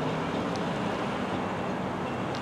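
A distant diesel train approaching: a steady low rumble with a faint engine hum.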